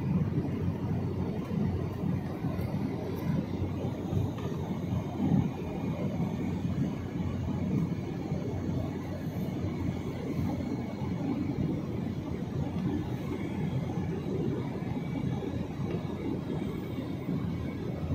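Steady low noise of a passenger airliner in flight heard inside the cabin: engine and airflow noise with no distinct tones or events.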